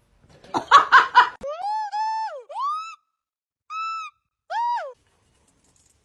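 A dog's high-pitched vocalizing: a short rough, choppy burst, then four drawn-out whining howls that rise and fall in pitch, the first the longest, with gaps between them.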